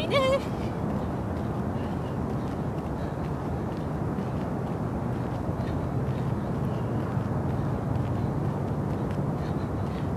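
Steady outdoor background noise: a low rumble with a hiss over it, with no distinct sounds standing out.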